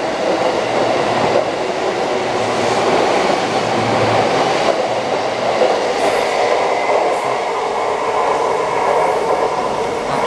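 JR East E233 series 7000 electric commuter train pulling out of the station, its cars rolling past close by with a loud, steady rumble of wheels on rails.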